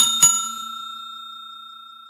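A bell-like ding sound effect, struck twice about a quarter second apart, then ringing with a clear pitched tone that slowly fades away.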